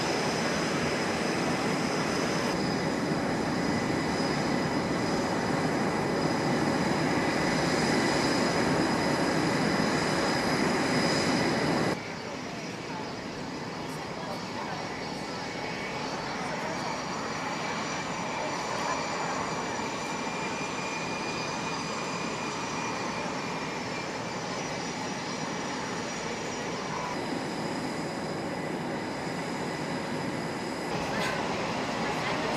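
Jet aircraft engines running on a flight line: a steady rushing noise with several high, steady turbine whines. The sound drops in level and changes abruptly about twelve seconds in, then carries on steadily, with voices faintly underneath.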